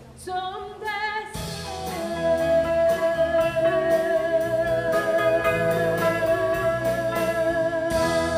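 Live band with guitars and drums playing the end of a country-folk song. After a few short sung notes, a singer holds one long final note from about two seconds in, over strummed chords and a steady drum beat.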